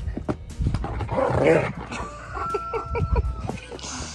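A dog making playful noises while romping with a child, who laughs about a second in.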